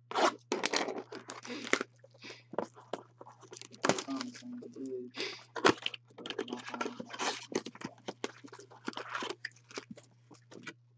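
Plastic shrink-wrap is ripped off a cardboard box of trading-card packs, with crackling, crinkling tears in quick bursts. The foil packs inside rustle as they are pulled out and handled.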